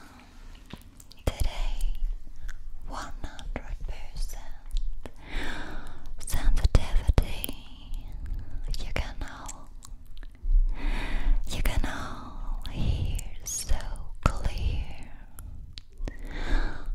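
Close-miked ASMR whispering into a studio condenser microphone, with unintelligible breathy whispers broken by many sharp mouth clicks.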